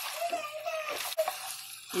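Wooden spoon stirring ziti through thick Alfredo sauce in a pan, a soft wet sound over a faint sizzle, with a single light tap a little over a second in.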